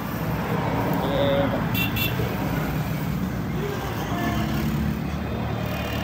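Steady outdoor traffic rumble with faint background voices. A brief double beep, like a vehicle horn's toot, sounds about two seconds in.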